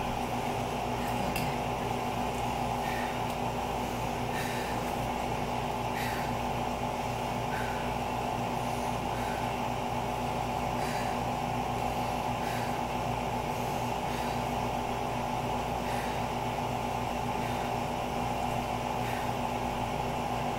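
A steady mechanical hum with a few fixed tones, like a running fan or air conditioner, with scattered faint ticks now and then.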